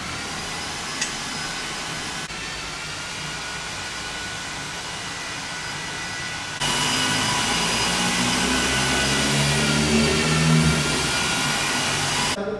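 Steady machine noise: a whirring hiss with several steady high whines. About halfway through it jumps louder and a deeper hum joins in.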